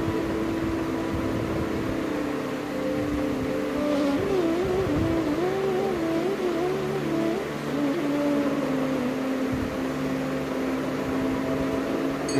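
Slow, soft instrumental background music: a long held note with a gently wavering melody line above it, at a steady level.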